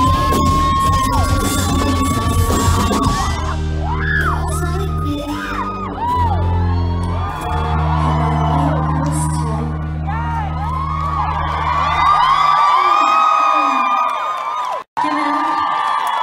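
A live band plays loudly in a hall, the singer holding one long note. The band drops to a sustained low chord while the crowd screams and whoops, then the music stops about twelve seconds in and the crowd keeps cheering. The sound cuts out for an instant near the end.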